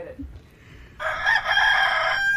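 A rooster crowing once, starting about a second in, a harsh call that ends on a held, clearer note.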